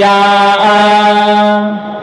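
Male Vedic chanting (Veda parayanam): a syllable drawn out on one long, steady note that fades just before the next phrase.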